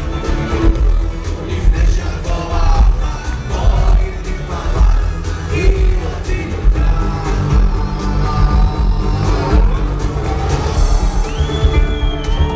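Live electronic rock band playing loud through a hall's sound system: a heavy bass beat, electric guitar and a male singer, with a high, bending lead line near the end.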